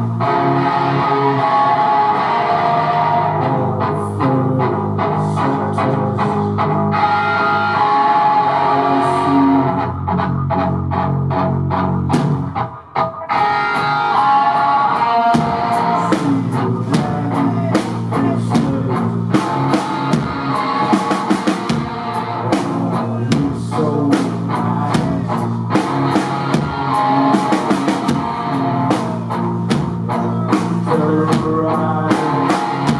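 Three-piece rock band playing live: electric guitar and bass guitar with a drum kit. The music drops out briefly a little before halfway, then comes back in with a steady, dense drum beat under the guitars.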